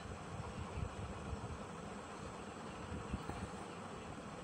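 Faint, steady background noise with a low, uneven rumble underneath, between stretches of narration.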